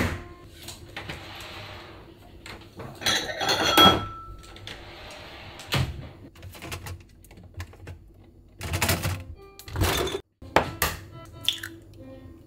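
Kitchen handling sounds: a refrigerator drawer shut with a sharp knock at the start, then scattered clatter and knocks of items handled at the cupboard and counter. Background music plays throughout and comes through more clearly near the end.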